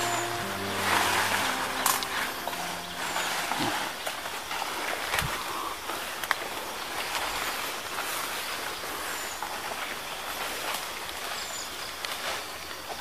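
Background music with sustained notes fades out about three seconds in. After that come rustling leaves and brushing branches, with scattered snaps and footsteps, as someone pushes through dense undergrowth.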